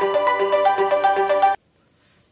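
Short electronic title jingle of quick, ringtone-like notes, about four a second, that cuts off suddenly about one and a half seconds in, leaving silence.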